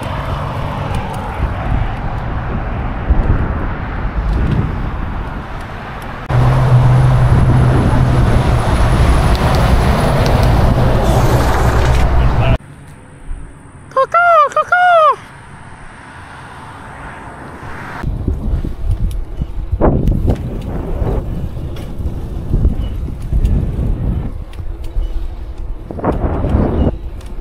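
Wind and road noise from riding a bicycle along a roadside, with a steady low hum through a louder stretch. In a quieter stretch about halfway through, a sandhill crane gives a rolling, rattling call lasting about a second.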